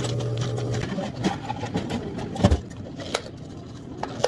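A steady mechanical hum for about the first second, then scattered sharp clicks and knocks, the loudest about halfway through, as clear plastic dome lids are snapped onto iced drink cups and the cups knock on the counter.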